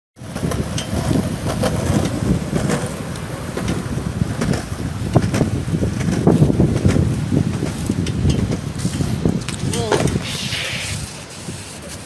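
Skateboard wheels rolling over concrete with wind buffeting the microphone, and sharp clicks over the pavement joints. About ten seconds in, a short cry that drops in pitch and a brief scrape as the rider falls off the skateboard.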